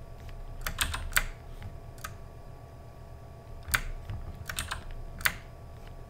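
Computer keyboard key presses: about nine short, sharp clicks in small irregular groups, the loudest about a second in and near the five-second mark, over a faint steady hum.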